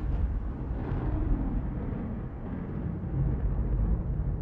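Fireball sound effect: a low, steady rumble of burning flames that swells slightly near the end.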